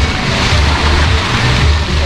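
Sea surf washing against coral rock, with wind buffeting the microphone in uneven low gusts.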